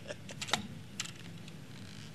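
A few short, sharp clicks and knocks in the first second, over faint room noise.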